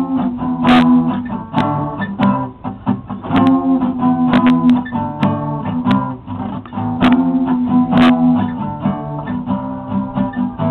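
Acoustic guitar strumming chords in an instrumental stretch of a punk-folk song, with sharp accented strokes about once a second.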